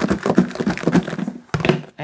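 Freshly air-fried shoestring fries and salt being shaken in a lidded plastic food container: a quick run of soft thuds and rattles as the fries tumble against the walls, then a knock near the end as the container is set down on the counter.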